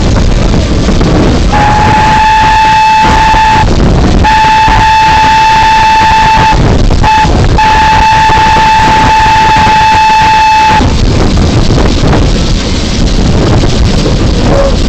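Steam locomotive whistle on one steady note, blown long, long, short, long: the railroad grade-crossing signal. It sounds over a constant rush of wind and running-train noise.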